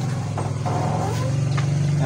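An engine running steadily at idle, a low even hum.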